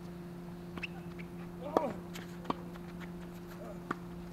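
A tennis ball bouncing on a hard court: a few sharp, scattered taps over a steady low hum. The loudest sound, just under two seconds in, is a short squeak with a bending pitch.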